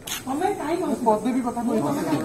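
Speech: a single voice talking continuously, starting a moment in.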